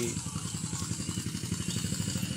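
A small engine running steadily in the background, a rapid low putter.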